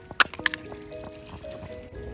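A rusty old saw blade tossed down onto foreshore stones, striking twice in quick succession, over background music with held notes.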